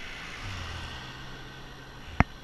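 An SUV overtaking a bicycle: a low engine hum and tyre noise that swell about half a second in and then fade as it pulls away.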